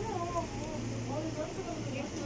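Indistinct talk of men nearby, over a steady low hum.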